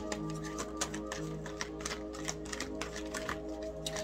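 A deck of tarot cards being shuffled by hand, an irregular run of quick clicks and flicks, over background music of sustained tones.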